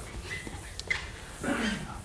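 Board eraser wiping across a chalkboard, a soft, faint rubbing, with a few brief faint squeaks and a short murmured voice sound near the end.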